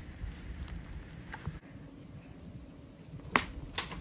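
A golf club striking a ball off the turf: one sharp crack a little over three seconds in, followed half a second later by a second, weaker click, over faint outdoor ambience.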